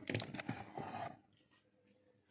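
A few light knocks and scrapes in the first second as a cardboard milk carton is pulled from a refrigerator door shelf.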